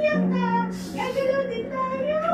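A song playing: a high singing voice carries a melody over a steady low held note.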